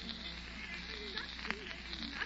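Quiet gap in an old radio transcription recording: steady hiss with faint crackle, a faint voice muttering, and a sharp click about a second and a half in.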